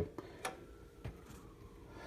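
A few faint clicks and ticks from a Pioneer PL-200 direct-drive turntable's tonearm and controls being handled while the playing speed is corrected from the wrong 45 RPM setting, over a faint steady hum.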